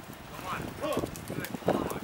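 A climber's short effortful grunts and breaths while pulling hard on small crimps, with scattered light clicks and clinks of trad gear on the harness.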